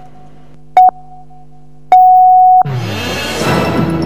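Countdown beeps of a TV station ident: a short beep about a second in, then a longer beep of the same pitch at about two seconds. Right after the long beep a sweeping whoosh comes in and electronic ident music starts.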